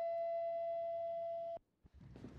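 Electronic doorbell chime, its tone ringing on steadily and fading slightly, then cut off abruptly about a second and a half in.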